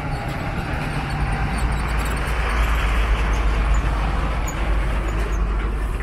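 A motor vehicle passing on the street: a low rumble with a hiss that swells to its loudest about halfway through and then eases off.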